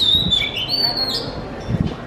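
Bird calls: a quick series of high, clear whistled chirps that glide up and down, stopping a little over a second in, with a low thud near the end.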